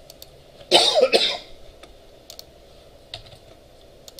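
A person coughs twice in quick succession, clearing the throat, about a second in. Faint computer keyboard and mouse clicks are heard around it.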